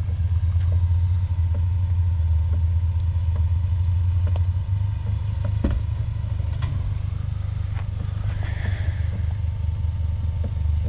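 A 2019 Ford Ranger's 2.3-litre turbocharged four-cylinder engine running at low revs as the truck crawls down a steep rocky trail, with scattered clicks and knocks of the tyres rolling over rocks.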